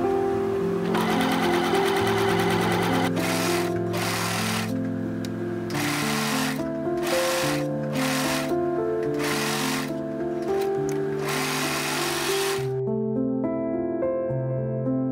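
A Bernette B37 computerized sewing machine stitches steadily for about two seconds. Then a serger (overlocker) runs in a dozen short stop-start bursts, ending a little before the end. Soft background music plays throughout.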